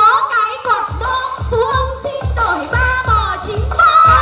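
A voice singing a pop-style song into a microphone, amplified over a backing track with a steady beat of about two pulses a second.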